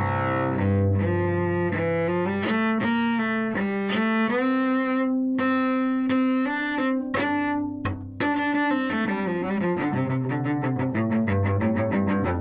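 Solo cello played with the bow: a melodic line of sustained notes with one long held note in the middle, moving into quicker, shorter strokes near the end.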